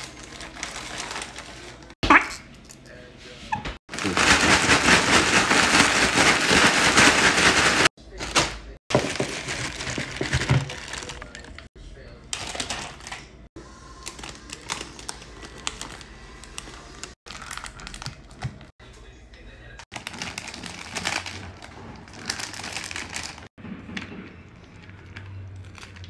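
Plastic chip bags crinkling as they are handled and crushed by hand, loudest for about four seconds early on, with knocks and handling noises and indistinct voices in between.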